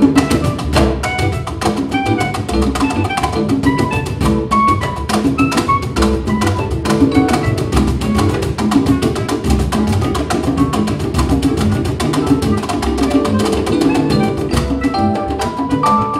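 Live world-jazz band playing: busy hand percussion and drums over upright bass and keyboard, with short melodic notes on top. Near the end a line of longer held notes comes in.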